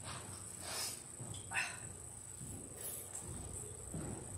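Faint rustling and handling noise from a clip-on microphone being put on, with a sharp knock about one and a half seconds in, over a steady high hiss.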